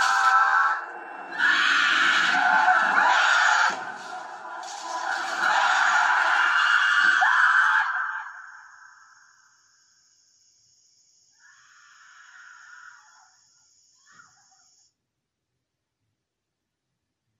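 Harsh, distorted screaming from the music video's soundtrack, in long stretches broken by two short dips, fading out about eight seconds in. Near silence follows, with a few faint sounds.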